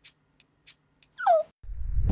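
A few faint ticks, then a short high cry that falls in pitch. Near the end a deep rumble swells in: the start of a large explosion of the campaign bus.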